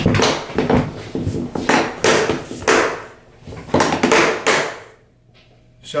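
Pelican 1750 hard case being shut: the plastic lid closed and its latches snapped down one after another, a run of sharp clicks and knocks over about four and a half seconds.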